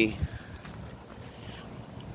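A pause in a man's talk: the end of a word at the very start, then faint low wind rumble on the microphone.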